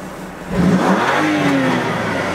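BMW M2 Competition's twin-turbo straight-six with an aftermarket PCW exhaust revved in Sport Plus, starting about half a second in, rising in pitch and falling back. The exhaust valves are coded closed, so the burbles on the overrun barely come through.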